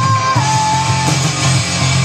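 Live rock band playing: distorted electric guitars, bass guitar and drums. A high held note sits on top and steps down to a lower pitch about half a second in.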